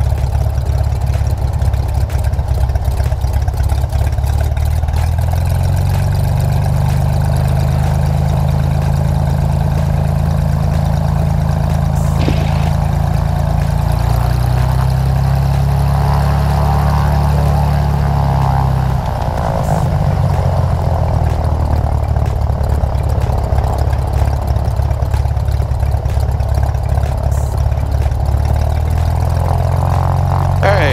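Single-engine piston airplane engine and propeller running at taxi power, a steady low drone whose pitch shifts a few times as the power changes, with a brief dip a little past the middle.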